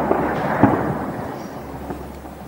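Shelling explosion: a sharp bang, a second bang about half a second later, then a rolling echo that fades over the next second.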